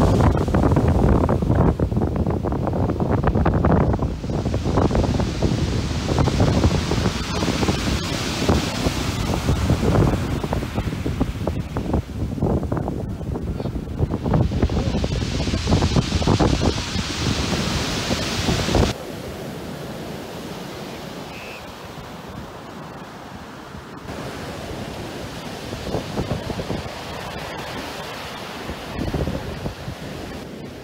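Surf breaking and washing over a shingle beach, with strong wind buffeting the microphone in heavy gusts. About two-thirds of the way through, the sound drops suddenly to a quieter, steadier wash of surf and wind.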